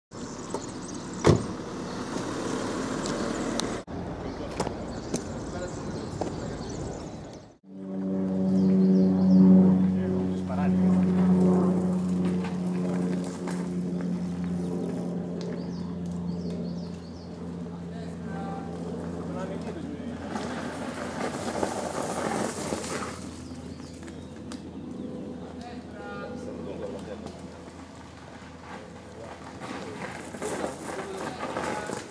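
Voices of people chatting outdoors, across several short edited scenes. A steady humming tone runs for about twelve seconds in the middle.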